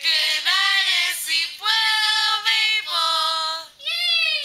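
Young girls singing a camp song together, a run of long held notes with a short break just before the end.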